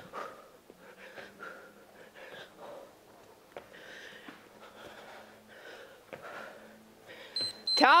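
A woman breathing hard and rhythmically while doing power mountain climbers, with soft puffs of breath about twice a second and a few light knocks of her feet on the mat. A short high tone sounds near the end.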